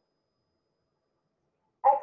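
Dead silence, then a woman's voice starts speaking near the end.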